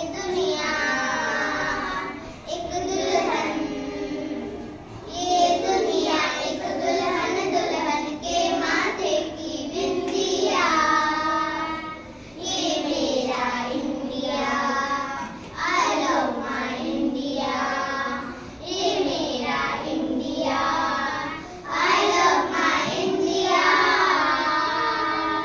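A group of young children singing together in unison, in short phrases with brief pauses between them.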